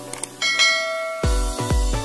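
Two quick mouse clicks, then a bright notification-bell chime that rings for most of a second. About halfway through, electronic music with heavy bass thumps, about two a second, cuts in.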